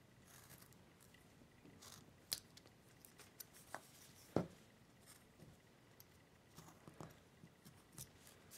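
Carving knife slicing into basswood by hand: faint, scattered short scrapes and small clicks as chips are cut, the sharpest about two and four seconds in.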